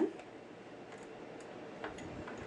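Small metal screws being handled and set into a sewing machine's needle plate: a light click near the end over a steady faint hiss.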